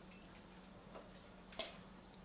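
Near silence with a steady low hum and two faint clicks of tableware, a weak one just under a second in and a clearer one about a second and a half in.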